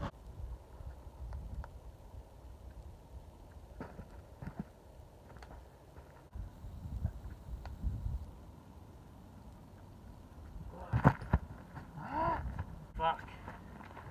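Low wind rumble on the microphone, then a single loud thud about eleven seconds in as a boulderer drops off the rock onto a foam crash pad, followed by a short grunt and breathy vocal sounds.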